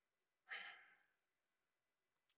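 Near silence, with one short, soft exhale from the man at the microphone about half a second in.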